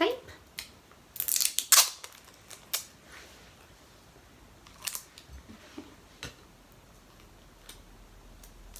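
Sellotape pulled off the roll in quick ripping strips about a second in, followed by a few separate sharp snips of scissors cutting the tape.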